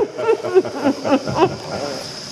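Laughter in several short, pitched bursts that die away after about a second and a half.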